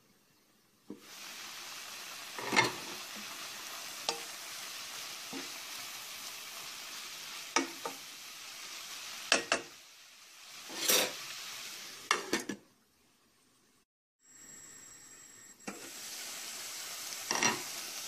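Chopped spinach sizzling in a steel pot as it wilts on the stove, a steady hiss as it gives up its water. Several sharp knocks against the pot come through it, and the sizzle breaks off briefly about two-thirds through.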